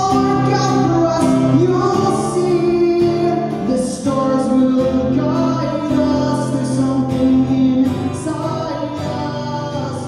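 A man singing a melody while strumming chords on an acoustic guitar, a live solo performance through a microphone; slightly softer near the end.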